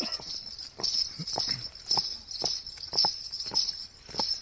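A horse's hooves striking a gravel road in an even trotting rhythm, about two beats a second. Crickets chirp steadily behind it.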